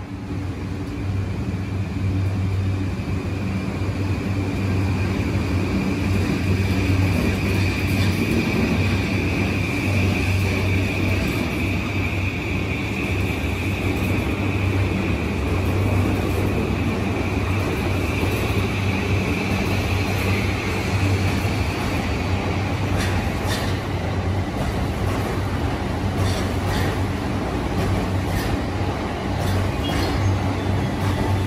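JR E235 series 1000 electric train pulling out and accelerating past along the platform: a steady low hum with a high electric motor whine that swells through the middle, and a few sharp clicks in the later part as the cars roll by.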